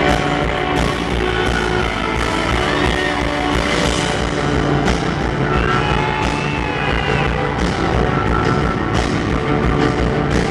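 Indie rock band playing live at full volume through a concert PA: electric guitar, bass and drums, with steady drum hits.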